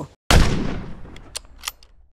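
A sudden loud bang that fades away over about a second and a half, with a few sharp clicks as it dies out. It is cut in after a moment of dead silence, an edited-in sound effect rather than sound from the scene.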